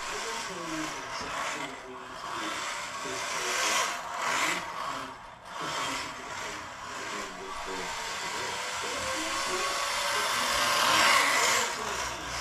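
Mini RC drift car's Furitek Hellfire 5500kv brushless motor whirring, with its tyres hissing on the hard floor as it drifts around. The sound swells louder about four seconds in and again near the end.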